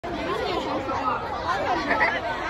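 Many overlapping voices chattering and calling out at once, with no single speaker standing out.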